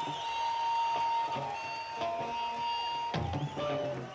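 Electric guitar on stage sustaining one long held note that stops about three seconds in, followed by a few shorter notes.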